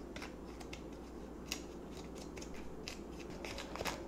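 Small plastic spoon stirring and scraping a damp, crumbly powdered candy mix in a thin plastic tray: faint, irregular clicks and scrapes.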